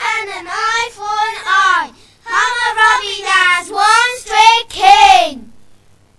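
Young children singing unaccompanied, two phrases with a short breath about two seconds in; the singing stops about five and a half seconds in.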